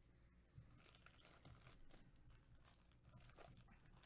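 Faint crinkling of sealed Topps Finest card-pack wrappers as the packs are handled and shuffled.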